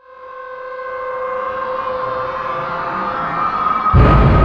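Outro sound effect: a held tone with a hiss that swells from quiet to loud over the first couple of seconds, a building riser that ends in a sudden deep boom at the very end.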